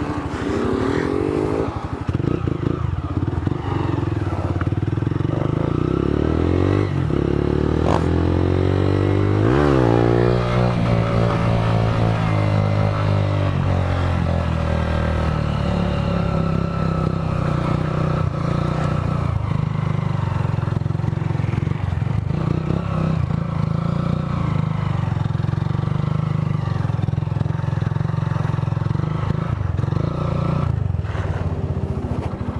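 Motorcycle engine running under way, heard close up from the fuel tank. Its pitch climbs in the first couple of seconds, rises and drops sharply about ten seconds in, then holds fairly steady.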